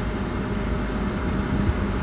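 Steady low rumble of a car's idling or slowly moving engine, heard from inside the cabin, with a faint steady hum running through it.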